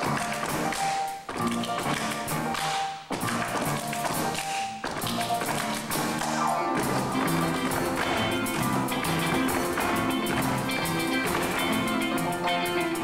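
Instrumental dance break of a Latin-flavoured Broadway show tune, with sharp dancers' foot stomps and taps on the accents. For the first few seconds the music stops and starts in short breaks; from about six seconds in the band plays fuller and without breaks.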